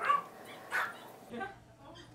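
A dog whimpering and yipping faintly in a few short sounds.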